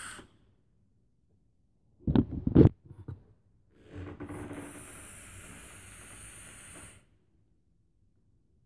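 A loud low thump about two seconds in, then a steady hiss lasting about three seconds as a long breath is drawn through a dripping atomizer on a mechanical vape mod.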